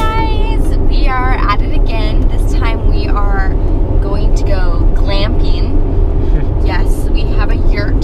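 Steady low road and tyre rumble inside a Tesla Model X cabin at highway speed, with no engine note from the electric car, under a woman talking.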